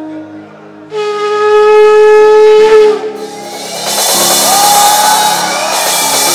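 Ram's horn shofar blown as one long steady blast of about two seconds, ending with a slight upward break, over soft sustained keyboard chords. Loud congregation cheering and shouting follows.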